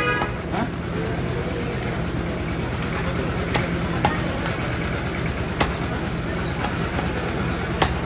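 Butcher's cleaver chopping goat meat against a wooden log chopping block: about five sharp, irregular chops a second or two apart. Behind them runs a steady low hum of traffic with background voices.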